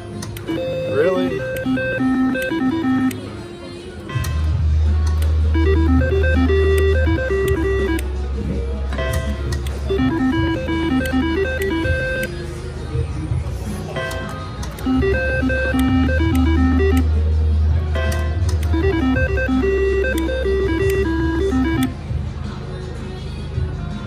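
Triple Double Diamond three-reel slot machine playing its electronic beeping spin tune as the reels turn, five spins in a row about every four to five seconds. A low hum comes and goes during two of the spins.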